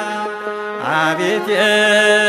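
Ethiopian Orthodox Tewahedo hymn (mezmur) music: a sung melody over a steady held low note, with a new phrase sliding upward into place just under a second in.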